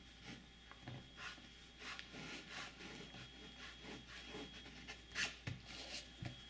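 Fine steel fountain-pen nib scratching faintly across paper in a series of short strokes, a nib the reviewer finds not the smoothest.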